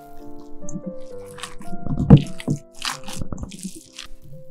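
Gloved hands squishing and kneading a wet minced-meat filling in a metal bowl: several separate squelches, the loudest about two seconds in, over background piano music.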